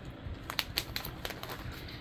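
Plastic sheet-protector pages in a ring binder rustling and crinkling as a page is turned, with a few light clicks.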